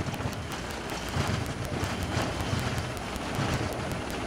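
Cockpit noise of a Canadair CRJ-200 regional jet accelerating on its takeoff roll between V1 and rotation: a steady rush of air and engine noise over a low rumble from the runway.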